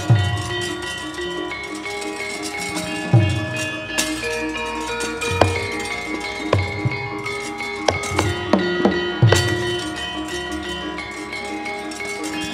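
Javanese gamelan music accompanying a wayang kulit shadow-puppet play: bronze metallophones and gongs ringing in steady held tones, with irregular drum strokes and sharp knocks every second or two.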